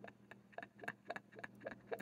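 Faint, irregular small clicks and ticks, about ten in two seconds, from handling a metal clip holding a paper chromatography strip, over a steady low electrical hum.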